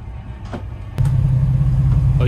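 Boat engine running with a low steady rumble. About a second in there is a click, after which the rumble becomes much louder.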